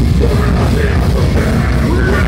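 Live heavy metal band playing loud and dense, with heavy drums and bass, distorted guitars and a vocalist's voice over them, recorded from the crowd.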